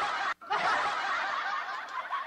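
Laughter from several people, with a brief break about a third of a second in.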